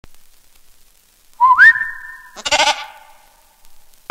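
Goat bleating twice: a first call that rises in pitch and then holds steady about a second and a half in, then a shorter, wavering bleat a second later.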